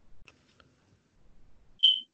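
A short, high-pitched electronic beep near the end, a single brief tone over faint background noise.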